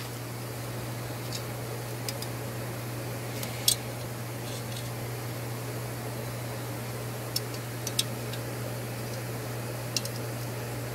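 Steady low machine hum, with a few light clicks and taps, one a little louder a bit over three seconds in, as a small plastic straw is handled against the wet steel sheet.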